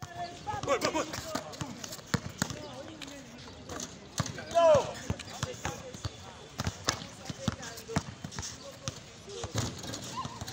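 A basketball bouncing on a hard outdoor court in irregular knocks, with people's voices around it. There is a loud shout about halfway through.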